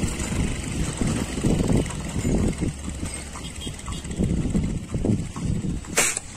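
Low, uneven rumbling of wind buffeting the microphone, ending with a single sharp shot from the hunter's gun, fired at the pigeons on the rooftop.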